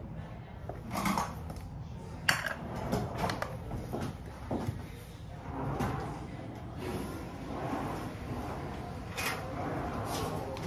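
Irregular clinking and clattering of small hard objects being handled and set down on a counter, with sharper knocks about a second in, just after two seconds, and near the end.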